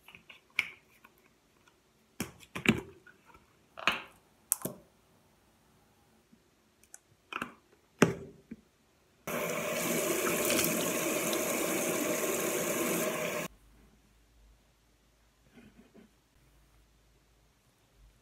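Scattered clicks and knocks of a toothpaste tube and electric toothbrush being handled at a sink. About nine seconds in, a bathroom tap runs into the sink for about four seconds and cuts off abruptly.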